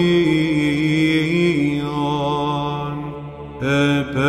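Byzantine chant: a chanter holds a long melismatic phrase over a steady drone (ison). The sound thins out briefly a little before the end, and a new phrase comes in.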